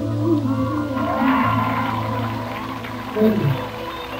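Live band playing the close of a soul ballad: sustained keyboard chords over a steady bass note, with gliding melodic lines on top and a falling slide near the end.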